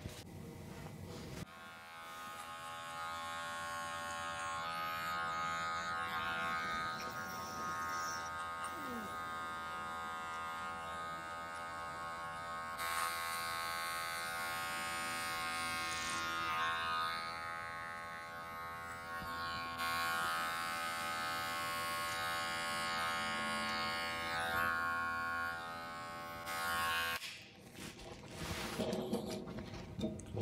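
Electric hair clippers with a guard comb running as they cut up the back of short hair in a fade. A steady motor hum comes in about a second and a half in, with louder, noisier stretches as the blades bite through hair on each pass. It stops shortly before the end.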